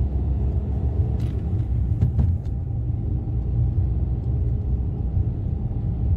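Steady low in-cabin rumble of a Maruti Suzuki Alto 800 on the move: its small 800 cc engine running under light load, mixed with tyre and road noise, heard from inside the car. A couple of faint brief knocks come about one and two seconds in.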